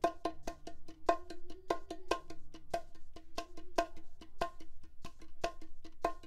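Bongos played with the fingertips: a steady pattern of several strokes a second, soft ghost notes with louder accented strokes about twice a second.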